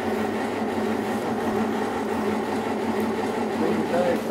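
Grey Ferguson tractor engine running at a steady speed, an even hum with no change in pitch.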